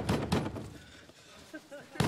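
Studio audience laughter fading away over the first second.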